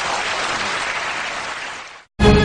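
Studio audience applauding, a dense clapping that fades out near the end.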